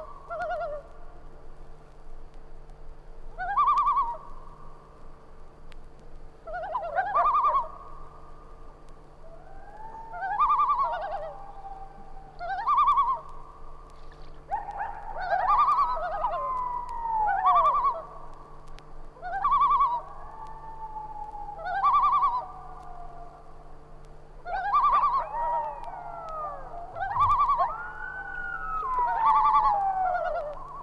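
Several common loons calling: short quavering calls repeated every two to three seconds, overlapped by long wails that glide up and down in pitch.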